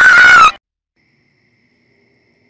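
A very loud, distorted high-pitched sound held on one note, cutting off abruptly about half a second in. It is followed by near silence with a faint thin high tone.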